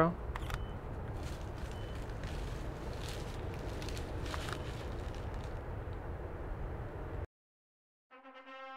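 Steady low outdoor background noise with a few faint clicks, which cuts off abruptly to silence a little after seven seconds in.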